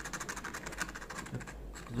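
Serrated knife blade scraped rapidly back and forth over leather, roughening the surface so the glue for a patch will hold: a fast run of scratching strokes that stops shortly before the end.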